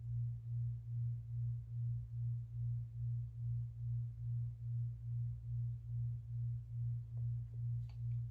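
A low steady hum that throbs evenly, about three times a second.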